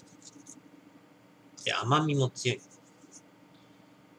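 Marker pen scratching out short, quick strokes on a small whiteboard. About two seconds in, a brief voiced sound, like a short word or hum, is the loudest thing.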